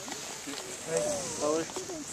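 Indistinct talking from about half a second in, over a steady hiss.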